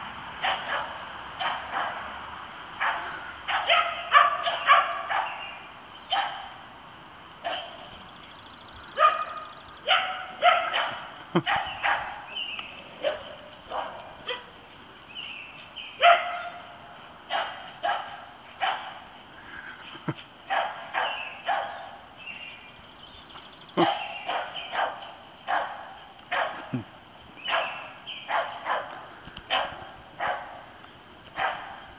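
Dogs barking excitedly in short, high yaps, coming singly and in quick runs of several with brief gaps between.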